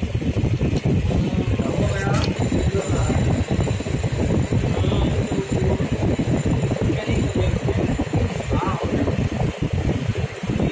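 Indistinct voices talking over a steady background din, with a sharp click about two seconds in.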